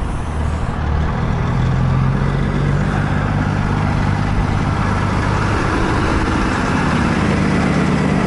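A truck engine running steadily, a low hum under a constant rush of noise.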